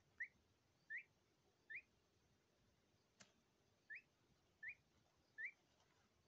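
Indian peafowl chick peeping: six short, rising, whistle-like peeps in two groups of three, about three-quarters of a second apart, with a single click between the groups.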